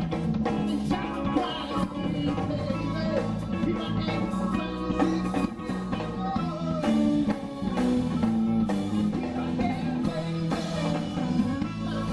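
Live band playing with a steady beat: drum kit, electric bass and electric guitar.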